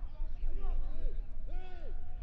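A man's voice speaking continuously, as in match commentary, over a steady low rumble.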